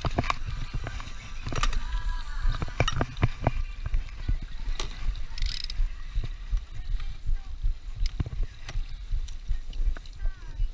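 A landing-net pole and fishing gear knock and rattle irregularly against a small boat as a salmon is netted. Under it is a steady low rumble of wind and water on a poor camera mic, and a short hiss about five and a half seconds in.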